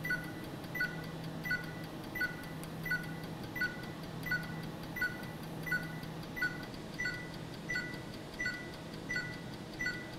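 Erbium YAG (Er:YAG) conservation laser firing a steady train of pulses, each marked by a short two-pitch beep with a click, about one and a half a second, over a steady low hum. The pulses are thinning a surface coating on a stone sample.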